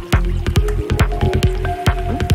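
Psytrance electronic dance music: a driving low kick pulse under rapid short clicking percussion and held synth tones.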